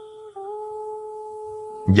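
Soft background music of sustained, held notes that step to a new chord about a third of a second in.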